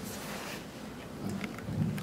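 Room tone between speakers: a steady hiss with a faint low hum, swelling slightly near the end.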